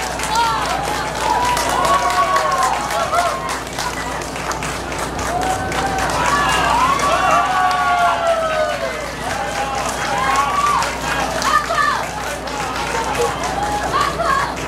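Audience clapping steadily after a choir's song, a dense patter of claps, with several people's voices calling out and talking over it.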